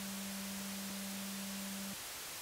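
Electronic static hiss with a steady low synth tone under it, the held tail of an outro sting; the low tone stops near the end, leaving the hiss.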